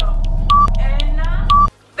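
Countdown timer sound effect: a short high beep once a second, twice, with ticking clicks between the beeps over a low steady drone, all cutting off suddenly just before the end.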